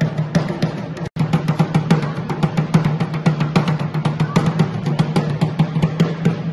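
Dhak, the Bengali barrel drum, beaten with sticks in a fast, steady festival rhythm of about six or seven strokes a second. The sound cuts out for an instant about a second in.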